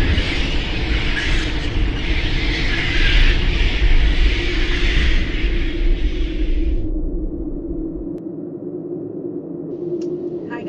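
Cinematic intro sound effect: a loud, deep rumble with a hissing wash over it, under a steady held tone. The hiss fades out about seven seconds in and the rumble drops away a second later, leaving the held tone.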